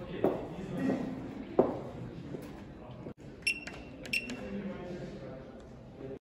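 Electronic keypad lock on a locker beeping as its buttons are pressed: two quick pairs of short, high electronic beeps. Before that, a few sharp knocks and a murmur of voices.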